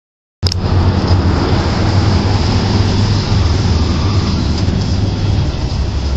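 Steady low rumble of vehicle or traffic noise, starting abruptly just after the recording begins.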